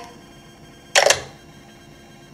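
A single short, sharp sound about a second in, over quiet room tone.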